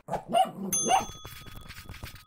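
End-screen sound effect: a dog barks twice, then a bell dings just under a second in and rings on, slowly fading.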